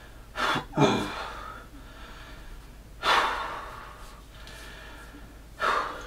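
A man breathing hard, winded from sets of push-ups: two quick, sharp breaths in the first second, a long breath out about three seconds in, and another heavy breath near the end.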